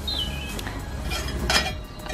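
Stainless steel chimney cap of an Ooni 3 pizza oven being lifted off its chimney pipe, metal rubbing on metal: a short high squeak near the start, then a brief scrape about a second and a half in.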